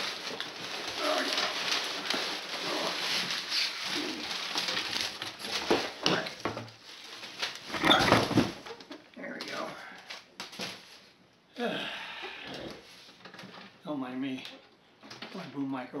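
Cardboard box and packing paper rustling and scraping as a canvas-covered wooden tube caddy is worked out of its shipping box, with a loud thump about eight seconds in as the case comes free or is set down. Scattered scrapes follow, and a man's voice is heard near the end.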